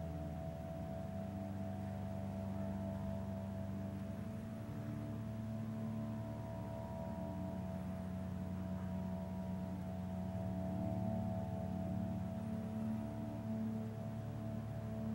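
Ambient background music of long held tones, like a singing bowl, that shift slowly in pitch every few seconds.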